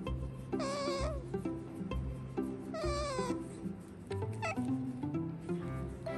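A domestic cat meowing three times, each call about half a second long and falling in pitch, the last one shorter, over background music with a steady beat.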